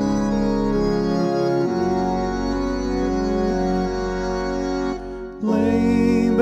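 Organ playing sustained chords as the introduction to the entrance hymn. The chord changes about a second and a half in, the sound thins out briefly about five seconds in, and it comes back fuller near the end.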